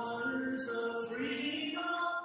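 A man singing long held notes with acoustic guitar accompaniment; the sung pitch changes about a third of the way in and again past the middle.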